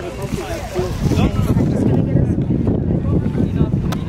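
Wind buffeting the camera microphone in a loud, low rumble, with voices faintly in the first second.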